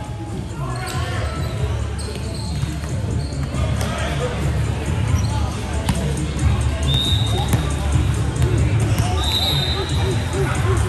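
Echoing sounds of an indoor volleyball game on a hardwood court: scattered thuds of a ball hitting and bouncing, and two short high sneaker squeaks in the second half, over a steady rumble of voices and music in the hall.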